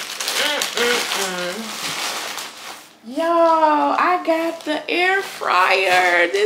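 Plastic and cardboard packaging crinkling and rustling as a parcel is unwrapped, with a few short voice sounds. About halfway through, a woman's voice takes over in long, drawn-out wordless sounds.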